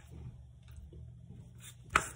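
Faint low room hum, then one sharp plastic click near the end as a gloved hand works the cap of a plastic seasoning shaker bottle.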